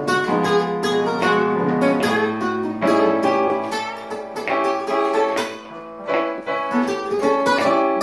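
Guitars playing a blues jam, chords with single-note lines over them. The 12-bar blues changes key, moving up a half step every six bars.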